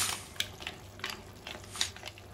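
Mussel shells clicking and clattering against one another and the pan as they are tipped from a bowl into a pan of paella and pushed in with a wooden spoon: half a dozen sharp, separate clicks.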